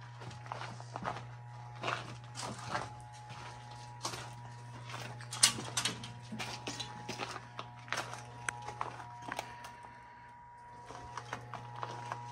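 Footsteps on a floor littered with fallen plaster and debris: irregular crunches and clicks, one sharper crack about halfway through, over a steady low hum.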